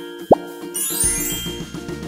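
Children's background music with a short, quick rising 'plop' sound effect about a third of a second in, the loudest moment. This is followed by a high tinkling sparkle effect over a low whoosh.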